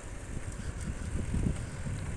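Low, uneven background rumble with no clear pitch or rhythm.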